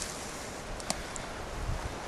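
Steady outdoor noise of wind on the microphone, with a single sharp click just under a second in.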